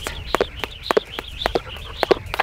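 Jump rope doing double-unders, the rope ticking sharply against the mat and ground with the jumps in a quick, even rhythm, several ticks a second.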